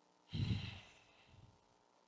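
A man's sigh: one long exhale that starts about a third of a second in and trails off over about a second.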